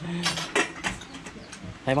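Spoons clicking and scraping against bowls and a cooking pan, a string of irregular sharp clicks.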